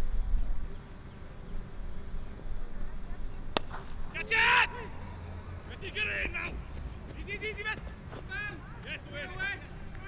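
A cricket bat strikes the ball with a single sharp crack about three and a half seconds in. A loud shout follows at once, then more calls from players across the field. A low rumble at the start, typical of wind on the microphone.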